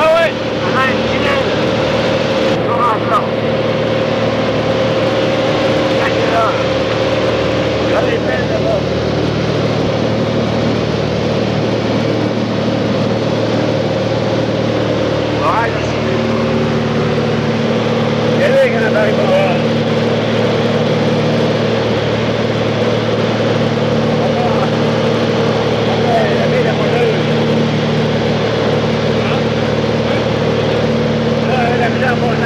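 The steady drone of a small propeller plane's engine and propeller, heard from inside the cabin in flight. It holds several steady tones, and its tone shifts slightly about halfway through.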